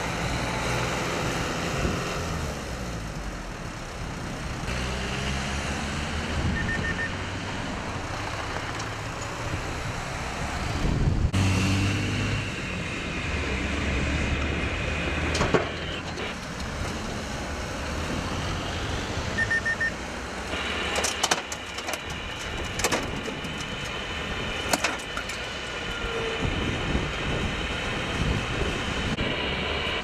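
Highway traffic: vehicles passing on a wet road with their engines running, and a few sharp knocks in the second half.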